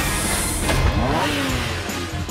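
Cartoon car engine sound effect for the Cat-Car accelerating away: an engine revving, with its pitch sweeping up and down about a second in, after a short whoosh at the start.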